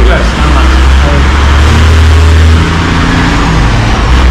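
A motor vehicle passing on the road: a deep engine rumble with road noise that eases about two and a half seconds in.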